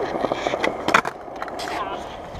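Skateboard wheels rolling on concrete, with sharp clacks of the board hitting the ground about a second in as the rider comes off it. There is a brief cry of a voice near the end.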